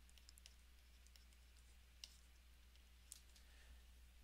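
Near silence with faint, scattered clicks and taps of a stylus on a tablet screen as an equation is handwritten, two of them a little sharper about two and three seconds in, over a low steady hum.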